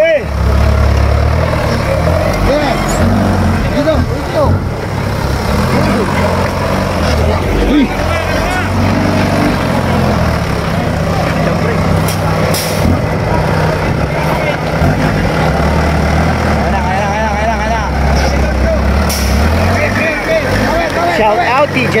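Off-road buggy's engine working hard and revving up and down as it climbs a steep muddy slope, with voices shouting over it.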